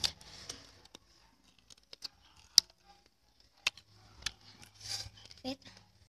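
Scattered small clicks and taps of green plums being handled and dipped in a small bowl of chili powder, the sharpest about two and a half seconds in. A brief voice sound comes near the end.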